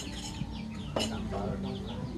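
Chickens clucking, with short high chirps running through, and one sharp clink of tableware about a second in.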